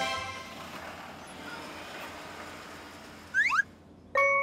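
Cartoon soundtrack: a musical chord fading out under a hissing whoosh that slowly dies away, then two quick rising whistle-like chirps near the end.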